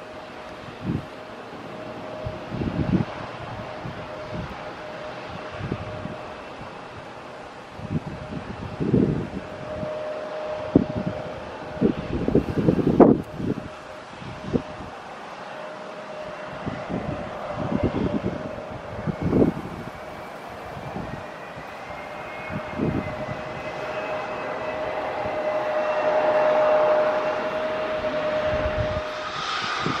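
Twin-engine jet airliner on approach, its engines giving a steady whine that grows louder from about two-thirds of the way through. Irregular gusts of wind buffet the microphone, loudest about twelve seconds in.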